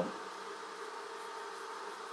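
A steady background hum with one constant tone, unchanging throughout.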